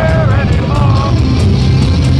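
Heavy metal band playing live and loud, with distorted guitars, bass and drums, heard from within the audience. The singer's voice rises over the band for about the first second.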